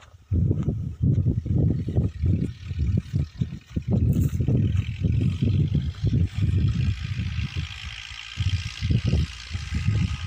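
Wind buffeting the microphone in irregular low gusts, with a faint steady hiss higher up that grows stronger in the second half.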